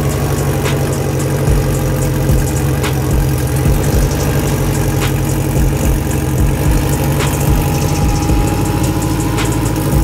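Turbocharged Honda K20 four-cylinder in a Civic EK sedan idling steadily, with a slightly uneven low note and a few sharp ticks.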